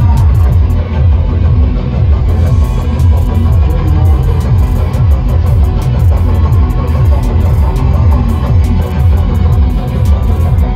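Loud music with a heavy bass and a steady beat.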